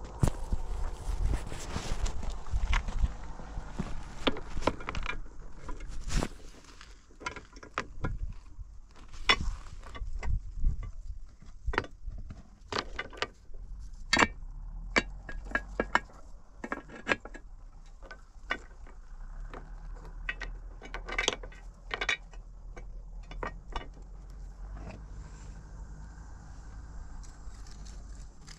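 Hollow concrete blocks and rocks being handled and set, giving irregular sharp knocks and clicks of stone on concrete, with fewer knocks in the last few seconds.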